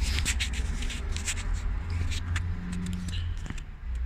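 Hands handling a greasy steering-rack slide and its O-ring on a cloth rag: rubbing, scraping and small clicks, thickest in the first second and a half, over a steady low hum.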